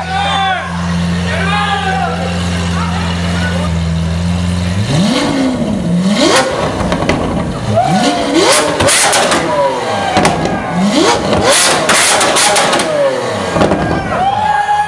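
Lamborghini Aventador's V12 with an IPE exhaust idling steadily, then revved hard several times from about five seconds in, each rev climbing and dropping back. Sharp exhaust crackles and pops come at several of the rev peaks.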